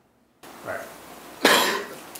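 A person in the room coughs once, sharply, about a second and a half in.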